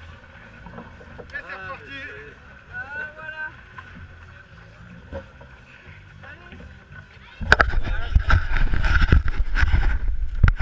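Faint voices of people talking close by. About seven seconds in, loud rumbling wind buffeting and knocking hits a body-worn action camera's microphone as the runner starts running again.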